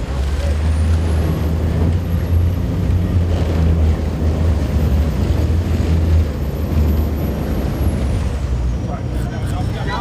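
Boat engine running with a steady low rumble, under wind on the microphone and water rushing along the hull. A thin high whine rises about a second in, holds, and falls away near the end.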